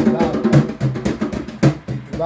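Hand strokes on a djembe in a steady rhythm, about three to four strokes a second, each with a low ringing tone.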